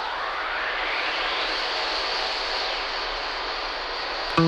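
Electronic synthesizer noise whoosh with a slow jet-plane-like sweep, rising through the first half and falling back after the middle, with no beat or pitched notes.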